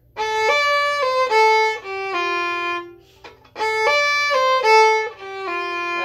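Solo fiddle playing a short phrase of an Irish reel slowly, twice over with a brief pause between, a few held bowed notes moving stepwise, the open A slurred into the next phrase.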